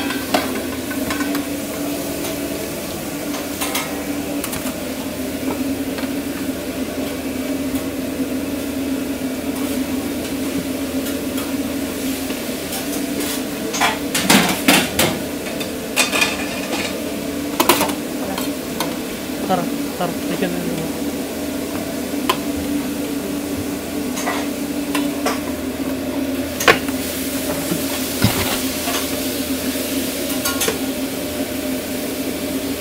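Food sizzling and frying on a food-truck cooktop, with scattered sharp clanks of metal utensils against the pan as the cook works it, over a steady low hum.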